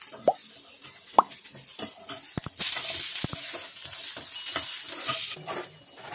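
Whole shallots and tomatoes frying in oil in a nonstick pan: a few short clinks of a steel ladle against the pan, then a steady sizzle that starts abruptly about halfway through.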